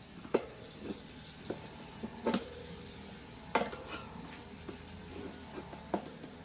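Tire levers clicking and scraping against a Honda CB750's front wheel rim as the tire bead is worked onto the rim by hand: about six sharp metallic knocks at irregular intervals, some briefly ringing.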